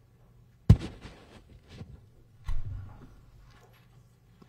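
A sharp knock under a second in, followed by light rustling and a duller thump about halfway through, as a printed exhibit photograph is handled and swapped on a courtroom document camera.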